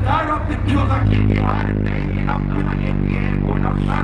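Hip-hop beat played loud through a club PA at a live show, with a deep held bass note coming in about a second in, and a rapper's voice over the beat.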